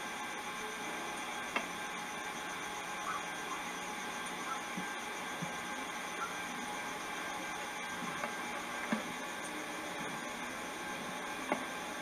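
Steady low hiss with faint high steady tones, typical of a 1990s camcorder's own tape mechanism and electronics picked up by its built-in microphone. A few faint clicks of handling now and then.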